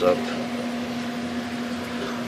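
A steady hum with an even hiss beneath it.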